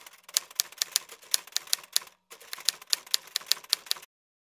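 Typewriter key-strike sound effect: a quick run of sharp clicks, about six a second, with a short break about halfway.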